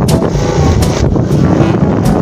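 Engine of a moving open vehicle running steadily, with wind buffeting the microphone in gusts.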